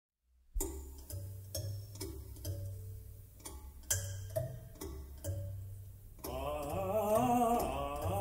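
Drums from a percussion-ensemble recording start after a brief silence, striking about twice a second over deep, ringing low tones. About six seconds in, a wavering singing voice comes in over the drums.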